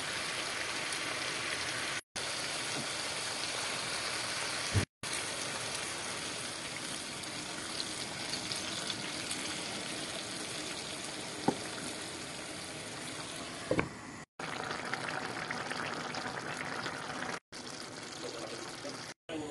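Meat and vegetable stew simmering in a wide pan on a gas hob, a steady bubbling hiss. It breaks off into brief silences several times, and a few sharp knocks stand out, one about five seconds in and two more later on.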